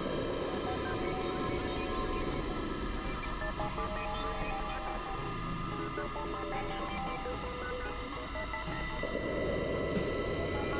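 Experimental electronic synthesizer drone music: many steady high tones and short held notes over a dense, grainy low drone that thins after the first couple of seconds and swells back near the end.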